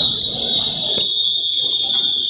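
A steady, high-pitched electronic buzzer tone held without a break, typical of a game timer sounding the end of the period; a single sharp click about halfway through.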